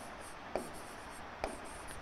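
Pen writing on an interactive smart-board screen: faint scratchy strokes with two light taps about a second apart.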